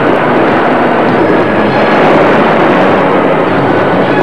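Loud, steady rushing roar of noise with no clear tune, a dramatic sound effect.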